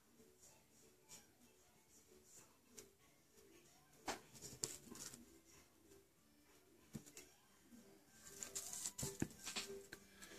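Mostly near silence, with faint soft taps and clicks from an acrylic nail brush working pink acrylic onto a nail form: a few about four seconds in, one near seven seconds, and more near the end.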